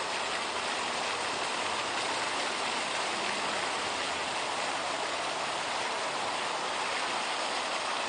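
Water from a park fountain's jets splashing in a steady, even rush.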